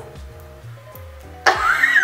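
Background music with steady low notes; about one and a half seconds in, a woman lets out a sudden high-pitched laugh that rises and then falls in pitch.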